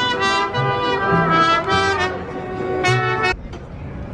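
Live band music with trumpets and other brass, held melody notes over a stepping bass line. The phrase ends about three seconds in.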